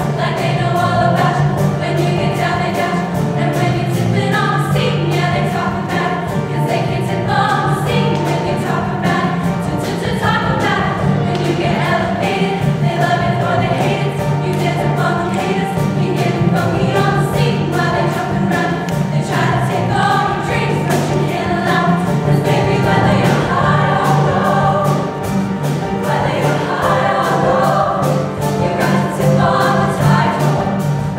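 A women's show choir singing together over loud accompaniment with a steady beat and a sustained bass line.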